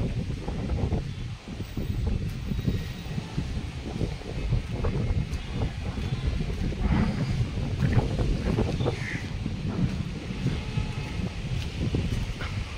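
Wind buffeting the microphone: a low, gusting rumble that rises and falls.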